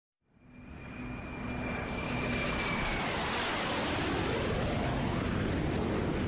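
Airplane fly-by sound effect: it fades in from silence into a steady rushing engine noise, with a thin high whine that drops away about three seconds in as the sound swells to its fullest.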